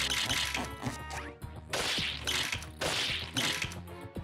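Cartoon sound effects of a runaway ice cream machine shooting out scoops of ice cream: four quick noisy shots in a row, over background music.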